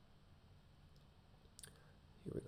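Near silence with low room hum, and one faint computer mouse click about one and a half seconds in as a folder is opened in a file dialog.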